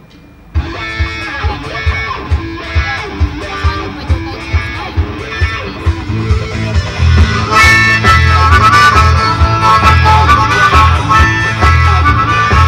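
A band kicks off a song about half a second in: electric guitar over a steady beat, with a harmonica played through a cupped microphone. The band grows louder and fuller about halfway through, when the harmonica's melody comes to the front.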